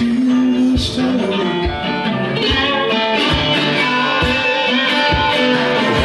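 Metal-bodied resonator guitar played live in a solo blues performance: picked notes ringing over a low thud that comes about once a second.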